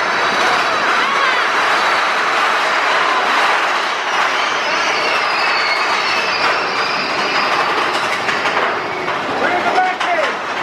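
Big Thunder Mountain Railroad mine-train roller coaster running along its track, a steady loud rattle and clatter of the cars and wheels.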